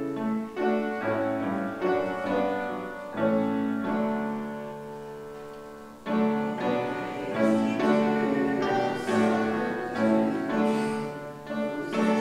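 A piano playing a slow hymn tune in full chords, the music for the hymn's final verse. About four seconds in a held chord dies away, and at about six seconds the playing picks up again.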